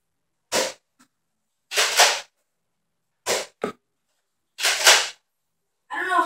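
A stuck barrel attachment being wrenched off a Nerf N-Strike Longshot CS-6 blaster, heard as five short, sharp noisy bursts of plastic working against plastic, with quiet gaps between them.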